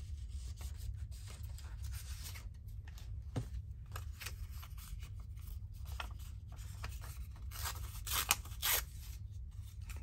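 Paper rustling and crinkling as hands handle a strip of patterned craft paper, with a louder run of crinkles about eight seconds in. A low steady hum sits underneath.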